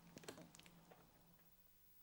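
Near silence: room tone with a faint low hum and a few faint short clicks in the first half second.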